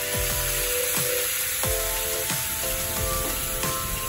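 Soy sauce sizzling hard in a hot frying pan with butter, a steady loud hiss as it hits the hot surface and cooks down around the hanpen fish cakes.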